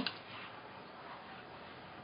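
Faint steady background hiss: room tone, with no distinct sound.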